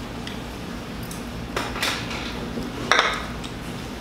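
Chopsticks and tableware clinking and scraping against small bowls as people eat, a few short clicks scattered through, the loudest near three seconds.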